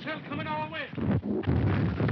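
A man's loud cry, then about a second in the loud, continuing rumble of explosions: an old film's blast and shell-fire sound effect.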